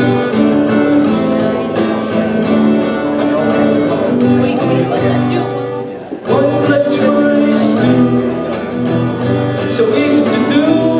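Acoustic guitar strummed as accompaniment to a simple self-written song, with a man's voice singing along, breaking off briefly a little after halfway.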